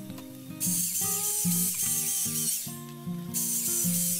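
Electric drill boring holes into a log, running in two stretches: it starts a little under a second in, stops shortly before three seconds, and starts again about half a second later. Background music of plucked guitar notes plays throughout.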